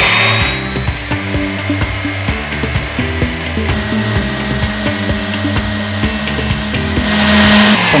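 Electric stand mixer running steadily at its highest speed, whisking egg whites and sugar toward stiff peaks, under background music.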